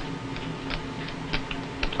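Poker chips clicking as they are handled at a card table: a handful of light, irregularly spaced clicks, over a low steady hum.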